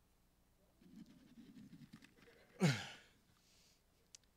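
A faint low murmur, then one short voiced exhalation from a person, falling in pitch, about two and a half seconds in.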